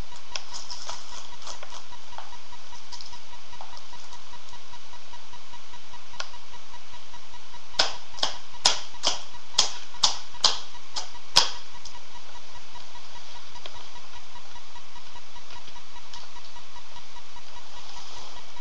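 Laptop keyboard keys struck by a small child: a run of about nine sharp clicks, roughly two a second, in the middle, with a few faint taps before.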